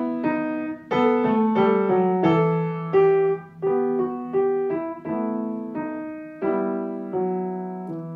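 Knight upright piano playing a short beginner's exercise hands together at a brisk tempo: a right-hand melody of separate notes over held low left-hand notes. It grows softer in the second half and ends on a held chord left to ring.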